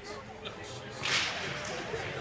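Ice skate blades and hockey sticks scraping the ice in one short, sharp hiss about a second in, as a faceoff is taken; a light click comes just before it.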